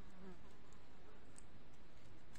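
Steady low background hiss, with a couple of faint clicks of plastic beads and nylon thread being handled as the thread is passed through a bead.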